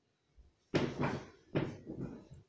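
Two short bumping, rustling noises close to the microphone, about half a second apart, like something being handled right at the camera.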